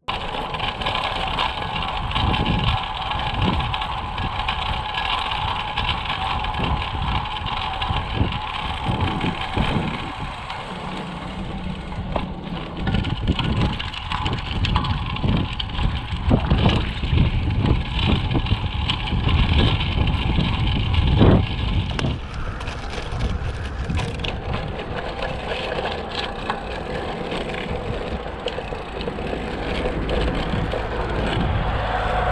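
Road bicycle ridden over rough, patched asphalt, heard from a camera on the rider: wind on the microphone and tyre rumble, with frequent knocks as the bike hits bumps. A little past the middle the knocking eases and the noise becomes steadier.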